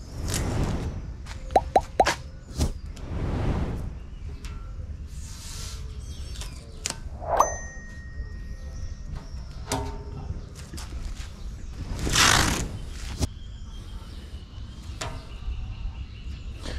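A steel tape measure and a thin corrugated galvanized steel sheet being handled: several short rasping scrapes as the tape and sheet slide, with a few light metallic clicks and a brief ding.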